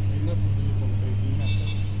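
A man speaking over a steady low hum that runs throughout, with a brief high chirp about one and a half seconds in.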